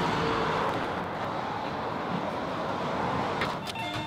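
Steady hiss of road traffic noise, with a few short clicks near the end.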